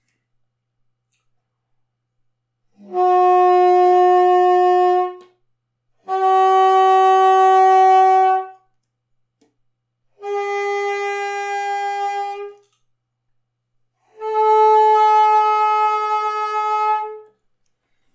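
Contrabassoon playing four long held quarter-tone notes high in its range, with short breaths between them. The first two are nearly the same pitch, E half-sharp/F half-flat. The last two sit higher, around G half-sharp/A half-flat.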